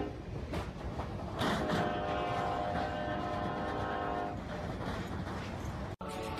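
Train running with a steady low rumble and a few sharp knocks; its horn sounds one long blast from about one and a half seconds in and stops after nearly three seconds.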